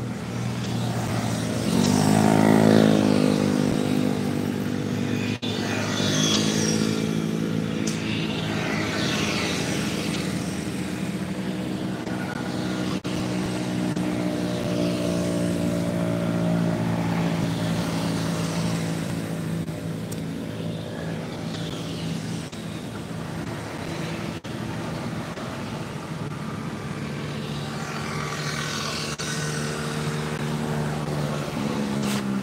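An aircraft engine droning steadily overhead. About two seconds in its pitch falls sharply, then it holds level.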